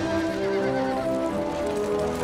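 Orchestral score holding sustained chords, with horse sounds mixed in: hooves clip-clopping and a horse whinnying.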